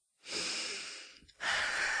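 A woman breathing heavily, two breaths of about a second each, the second a long sigh: an upset sound.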